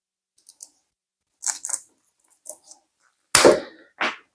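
Electrical tape being pulled off the roll and wrapped around a cut jumper wire on an electric motorbike's controller wiring, in short separate rips: a few faint ones, then a louder, fuller one about three and a half seconds in.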